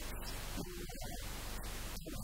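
Steady hiss of background recording noise, with a man's voice heard briefly about halfway through.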